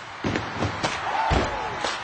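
Step team stepping: a quick, irregular run of sharp stomps, claps and body slaps, with crowd noise and one voice shouting a little past a second in.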